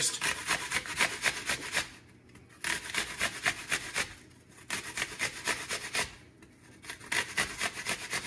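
An apple being grated on the largest holes of a metal box grater: rasping strokes in four quick runs with short pauses between them.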